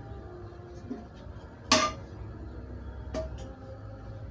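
A sharp metallic clink of kitchenware about two seconds in, ringing briefly, then two lighter clinks about a second later, over soft background music.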